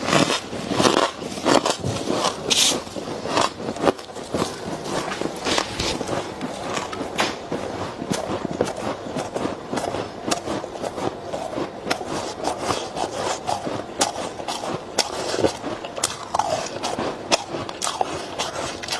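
Freezer frost crunching: soft ice chewed close to the microphone, and frost scraped by gloved hands from the walls of a chest freezer, making a dense run of small icy crackles and scrapes. The crunches are louder and more spaced in the first few seconds, then finer and denser.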